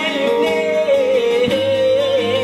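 Live accordion and long-necked lute music: a wordless voice sings a wavering, sliding melody over a held accordion note, and a low accordion bass note comes in about one and a half seconds in.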